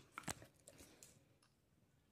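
Near silence with a few faint clicks and taps, most in the first half second: a dog's claws on a tiled floor as it moves about.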